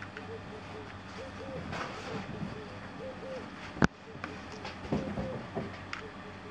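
Utility knife cutting into a dried tiger shark jaw, with one sharp crack about four seconds in, over a steady low hum.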